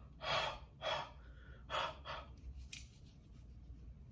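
Three short puffs of breath blown onto a pair of eyeglass lenses, about half a second to a second apart, all in the first two seconds: huffing on the lenses to clean them.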